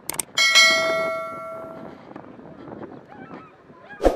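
Two quick mouse-click sounds, then a bright bell chime that rings out and fades over about a second and a half. Together they are the click-and-ding sound effect of a YouTube subscribe-button animation.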